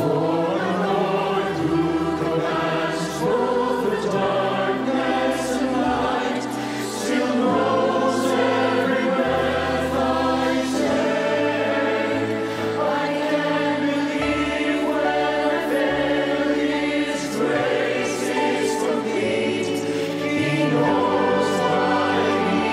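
Mixed choir of men and women singing a worship song in harmony over sustained instrumental accompaniment, assembled as a virtual choir from separately recorded voices.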